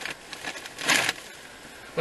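A brief rustle about a second in, of a shopping bag being rummaged through to pull out a purchase, over a quiet car interior.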